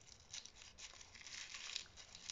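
Faint, irregular rustling and crinkling of tissue paper as fingers fold down the green tissue-paper leaves of a paper carnation.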